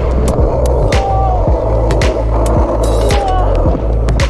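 Skateboard wheels rolling fast down and along a large skatepark ramp, a continuous rolling rumble. A background music track with a steady bass beat plays over it.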